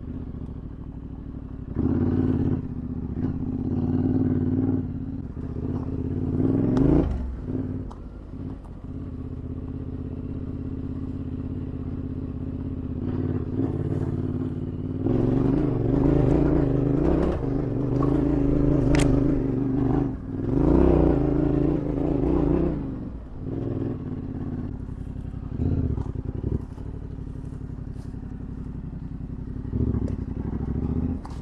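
Yamaha Ténéré 700's 689 cc parallel-twin engine being ridden on a dirt trail, revving up and easing off repeatedly, louder under throttle for several seconds past the middle, with occasional clatter.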